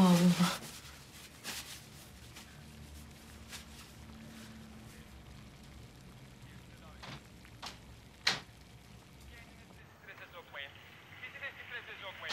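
A few light clicks and knocks of kitchen cookware and utensils over a faint steady hum, with a brief bit of voice at the very start and faint murmured voices near the end.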